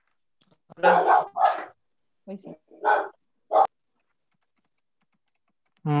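A dog barking in short bursts, about five barks in two quick groups, picked up through a participant's microphone on a video call.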